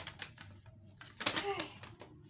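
Paper till receipt rustling and crackling as it is handled and moved about in the hand. A short vocal sound about a second and a half in.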